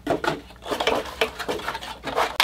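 A motherboard's retail box and packaging handled as the board is lifted out: a run of irregular light knocks, scrapes and rustles.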